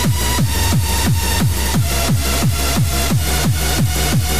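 Fast hardcore rave music mixed live from DJ decks: a hard kick drum about three times a second, each kick dropping in pitch, under a sustained synth line.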